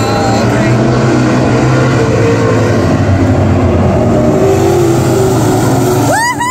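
Stock car engines running loud and steady at the race track, a continuous low rumble.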